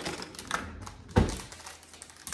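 Scissors snipping open a small plastic snack pack, with a few light clicks, and one dull thump a little over a second in.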